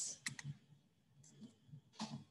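Faint clicks of a computer mouse and keyboard: three quick clicks shortly after the start and a couple of softer ones about a second later.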